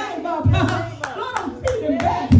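Rhythmic hand clapping, a few sharp claps a second, under a woman's voice amplified through a microphone.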